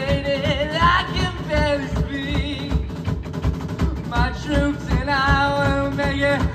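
Live rock band playing: electric guitars, bass and drums under a steady beat, with a lead melody line of long, wavering notes that drops out about halfway through and comes back near the end.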